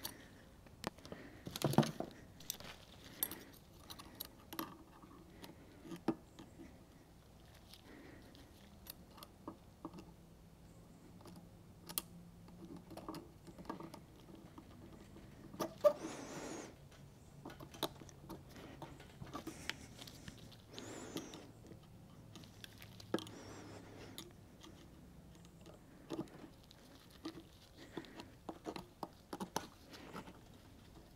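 Faint, scattered metallic clicks and taps of a steel retaining ring being worked into its groove with snap-ring pliers, with a few louder knocks.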